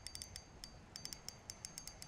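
Spinning reel being cranked against a fish, giving off faint, rapid, irregular clicking.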